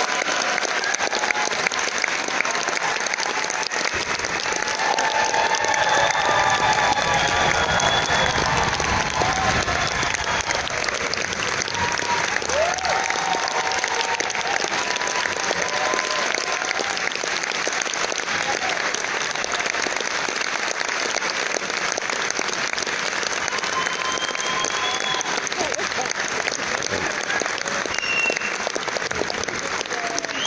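Concert audience applauding steadily, swelling slightly about five seconds in, with a few voices calling out over the clapping.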